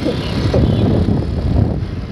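A moving scooter heard from the rider's seat: a low, uneven rumble of wind on the microphone over the scooter's running noise.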